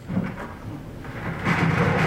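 A bucket of practice balls being dumped out into another container: a brief clatter just after the start, then a dense tumbling cascade of balls, loudest from about a second and a half in.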